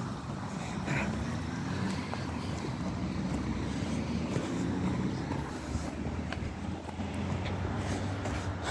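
A motor vehicle's engine running as a low rumble, settling into a steady low hum near the end.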